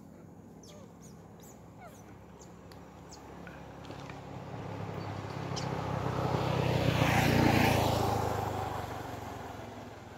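A road vehicle passing close by: its engine and tyres grow louder to a peak about seven and a half seconds in, then fade away.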